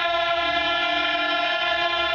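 Male chorus singing a selawat, holding one long steady note together without drumming.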